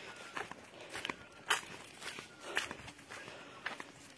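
Footsteps on a dry dirt trail strewn with fallen leaves and grass, an irregular step every half second or so.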